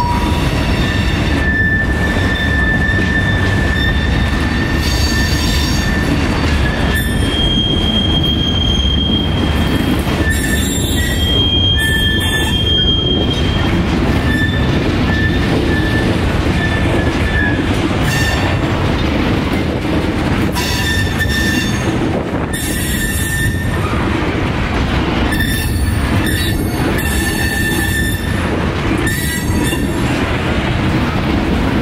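Freight cars rolling slowly past, their steel wheels rumbling steadily over the rails, with high-pitched squeals coming and going throughout.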